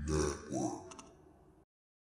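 A man's short vocal sound that tails off, then the audio cuts off abruptly to complete silence a little over one and a half seconds in.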